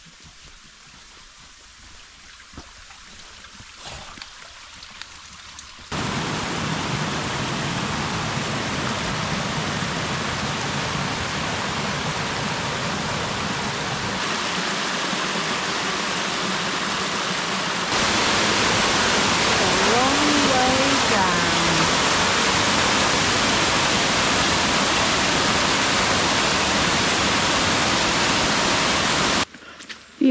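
Small woodland waterfall, water cascading over rocks into a burn: a steady rush that starts suddenly about six seconds in after a quieter stretch and gets louder at about two-thirds of the way through. A short voice-like sound wavers over it about two-thirds through, and the rush cuts off just before the end.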